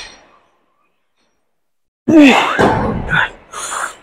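A man's loud strained grunt, its pitch rising then falling, followed by a few sharp breaths out, while he pushes a heavy incline dumbbell press. The first two seconds are dead silent.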